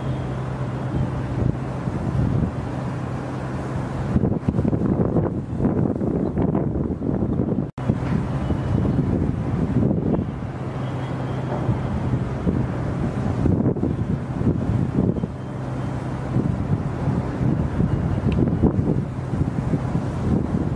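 Wind buffeting the microphone over a steady low hum, with a momentary break in the sound about eight seconds in.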